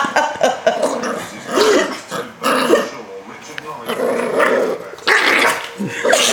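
Yorkshire terrier growling with short barks as it is held on its back and tickled. The bursts come in uneven fits, loudest at the start and again from about five seconds in.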